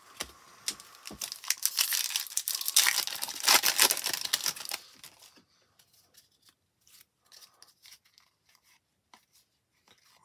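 Wrapper of a 2023 Topps Series 2 trading-card pack being torn open and crinkled, a loud crackling that lasts about four seconds, followed by faint clicks of cards being handled.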